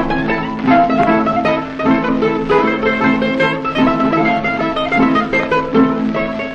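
Instrumental break of a 1948 rebetiko recording: a bouzouki plays a run of quick plucked notes over string accompaniment, with no singing, the sound dull and narrow like an old record.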